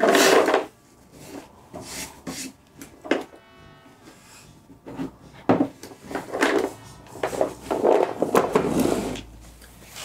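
Wooden folding chess box being handled: a sharp wooden knock at the start, scattered knocks and clacks as it is turned over, then a longer rattling, clattering stretch near the end, as of loose chess pieces shifting inside.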